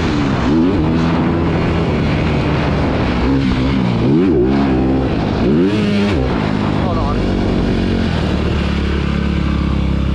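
Motocross bike engine at race pace, its pitch dropping and climbing sharply several times as the throttle comes off and back on, then held nearly steady for the last few seconds.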